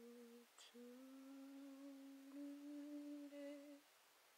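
A woman humming a slow tune quietly, in two long held notes with a short break about half a second in.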